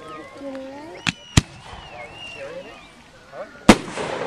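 Aerial fireworks shells bursting: three sharp bangs, two close together about a second in and a louder one near the end that trails off into a rumbling echo, with people talking in the background.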